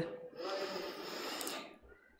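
A woman drawing a long, soft breath in close to a microphone, lasting over a second.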